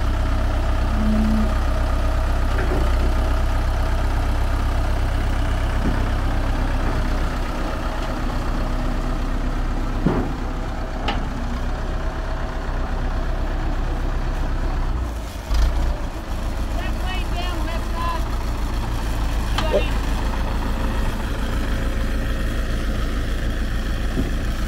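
Fiat-Allis 8D crawler bulldozer's diesel engine running steadily as the dozer is driven onto a flatbed trailer, with a brief dip and a knock about fifteen seconds in.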